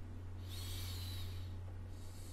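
A steady low hum, with a soft hiss lasting about a second that starts about half a second in.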